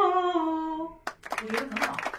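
A woman holding a sung vowel in a vocal warm-up exercise; the note slides gradually down in pitch and stops about a second in. A sharp click follows, then a quick run of voice sounds.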